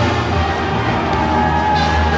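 Loud music with a heavy, steady bass line.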